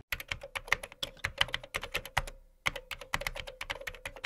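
Computer keyboard typing: a quick, irregular run of key clicks, a brief pause about halfway, then another run, over a faint steady tone.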